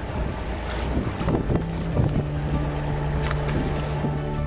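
Wind buffeting the microphone over a boat's engine and a choppy sea. About halfway through, steady sustained music fades in underneath.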